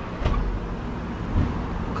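Low, steady rumble of city street traffic.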